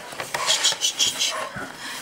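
Self-adhesive elastic bandage being pulled from its roll and wrapped around a dog's hindquarters: a run of about four short scratchy rustles.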